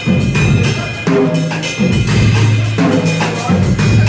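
Live instrumental music: a drum kit keeping a beat over sustained low bass notes, with keyboard tones higher up.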